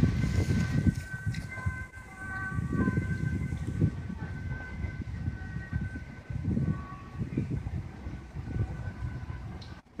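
Outdoor ambience dominated by wind buffeting the microphone in uneven gusts, with faint steady high tones held above it.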